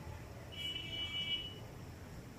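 Whiteboard marker squeaking on the board while writing: one steady high-pitched squeak about a second long, starting about half a second in.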